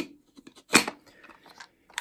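Handling noise from a plastic bulk film loader being picked up and turned over: one sharp clack a little before a second in, then a few faint clicks.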